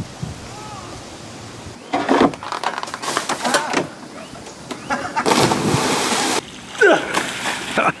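Shouting voices, then a splash of about a second, a little over five seconds in, as a person drops from a rope swing into river water, followed by another shout.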